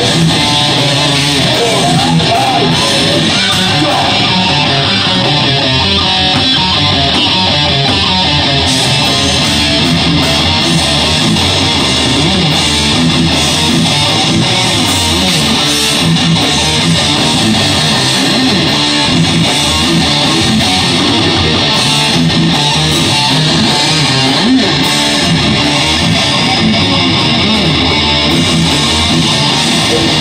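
Live rock band playing: electric guitar, bass guitar and drums at a loud, even level with no break.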